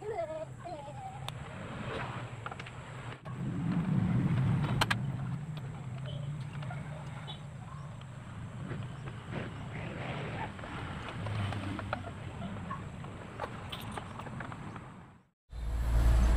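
Handling noise of a motorcycle's plastic tail fairing being fitted, with a few sharp plastic clicks and knocks over a low background rumble. The sound cuts off shortly before the end.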